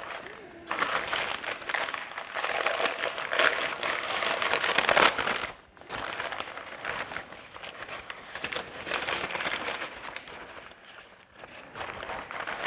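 Grease-soaked butcher paper crinkling and rustling as it is unfolded by hand from around smoked beef short ribs, with a brief pause a little before halfway.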